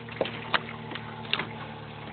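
Handling noise as a hook is worked out of a small papio's mouth: a few sharp clicks over a steady low hum.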